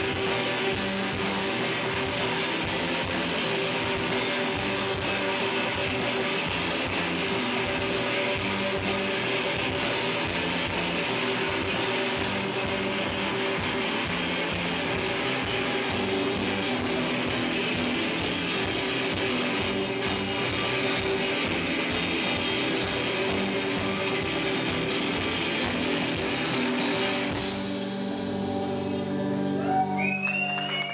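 Live rock band playing loud and dense, with electric guitars, bass guitar and drum kit. About 27 seconds in, the drums stop and the guitars are left ringing on a held chord as the song ends.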